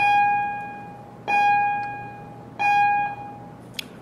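A repeating bell-like chime: the same single note sounds three times, about every 1.3 seconds, each time fading away over about a second. A small click follows near the end.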